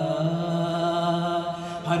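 Qawwali singing: a male voice holds one long, steady note, which eases off shortly before the end as the next phrase begins.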